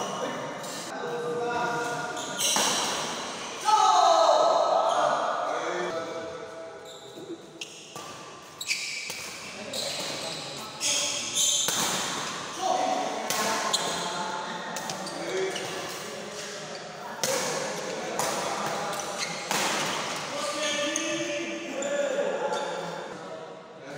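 Badminton doubles play in a large echoing hall: repeated sharp cracks of rackets striking the shuttlecock, shoes squeaking on the court floor, and players and onlookers calling out.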